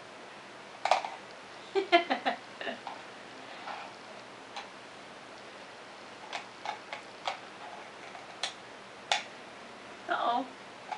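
Small plastic toy spoons clicking and tapping against a plastic cup as a toddler stirs: scattered single light clicks, with a short quick cluster about two seconds in.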